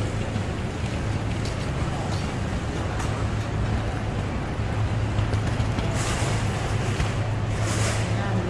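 Steady low drone of idling vans and traffic at an airport pickup curb, with two short hisses about six and seven and a half seconds in.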